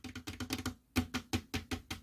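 Fingers tapping on the lamp's hard plastic ring in a quick run of sharp clicks, with a short break just before a second in. The taps give the lamp's built-in microphone something to pick up in its sound-reactive mode.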